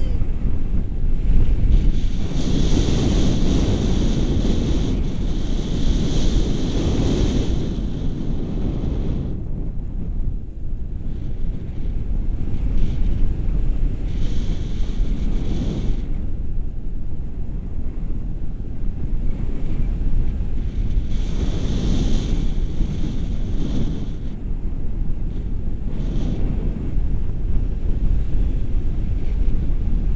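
Wind rushing over an action camera's microphone in flight under a tandem paraglider: a loud, steady low rumble that swells in gusts, strongest a few seconds in and again about twenty seconds in.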